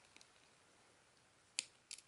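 Near silence, with two brief, sharp clicks close together near the end.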